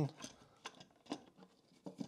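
A few faint clicks and light knocks as a plywood lid is set onto a small wooden speaker enclosure and pressed into place by hand.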